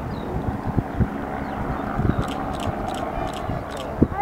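Distant Bo 105 twin-turbine helicopter in display flight, its rotor and engines a steady low rumble mixed with wind on the microphone. A short run of faint ticks comes in the second half.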